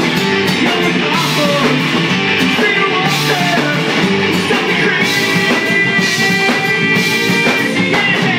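Live rock band playing loud and steady: electric guitars, bass and drum kit with regular cymbal crashes, and a man singing over them.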